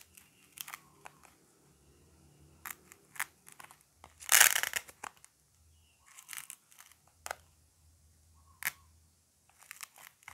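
Hard plastic toy cake slices clicking and scraping against each other as they are fitted together into a round cake. There are a few sharp clicks, and one louder rasping scrape about halfway through.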